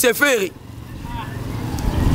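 A motor vehicle's engine rumbling low, growing steadily louder as it draws near, after a man's voice briefly ends a phrase.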